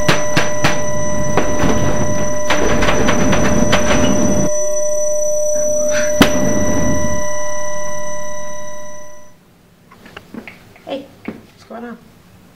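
A loud, sustained droning soundtrack of several steady tones, with scattered knocks and thuds, fades out about nine seconds in. A quiet room with a few faint short sounds follows.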